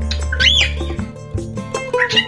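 Cockatiel whistling: a note that slides up and back down about half a second in, then quick chirps at the end, over music.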